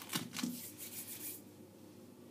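A sharp click, then soft rustling and handling noise for about a second and a half before it settles to quiet room tone.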